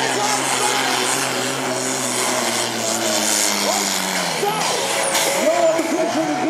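Diesel tractor engine running hard under load as it pulls the sled, a steady drone whose pitch sinks about two-thirds of the way through, with a voice talking over it.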